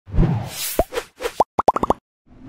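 Intro logo sound effect: a low thump with a whoosh, then a series of short cartoon-like pops, each sliding up in pitch, coming faster and faster in a quick run near the end.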